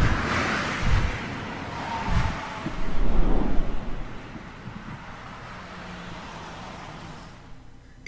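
Sound effects for an animated logo intro: a few deep thumps in the first two seconds and a rushing, traffic-like whoosh that swells to its loudest about three seconds in. The sound then fades away over the last few seconds.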